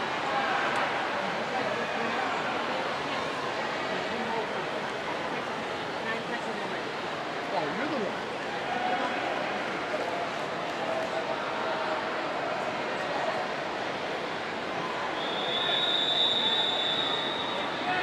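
Spectators' crowd noise: many voices talking and cheering at once, steady throughout. Near the end a shrill, steady high note lasts about two seconds.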